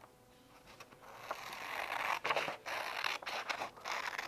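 Scissors cutting through paper: a dry shearing scrape with a few sharper snips, starting about a second in.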